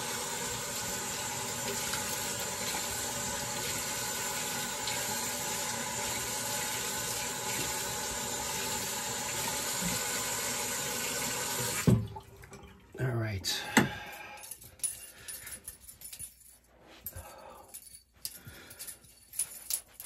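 Water tap running into a sink while a face is rinsed after a shave, a steady rush that is turned off abruptly about twelve seconds in. After that, only brief scattered small sounds.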